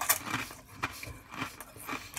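Crunchy kettle-cooked potato chips being chewed: a run of irregular crisp crunches, several a second.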